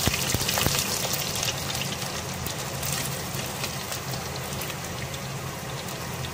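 Chopped onions sizzling and crackling in hot oil in a clay pot. The sound is loudest for the first second or so as the onions hit the oil, then settles into a steady sizzle.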